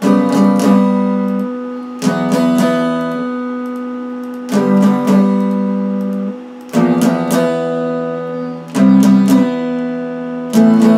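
Electric guitar played with a clean tone, strumming chords. A chord is struck with a few quick strokes about every two seconds and left to ring out, five chords in all.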